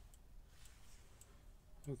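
A few faint, sparse clicks over near-silent room tone.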